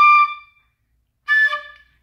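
Tin whistle playing short, separate notes on the same pitch as a quarter-note rhythm drill: one note right at the start and a second about a second and a quarter later, each about half a second long with a gap of silence between.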